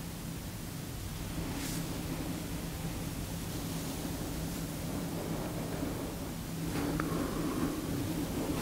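Quiet room noise: a steady low hum under an even hiss, with a brief faint rustle about a second and a half in and another faint sound near the end.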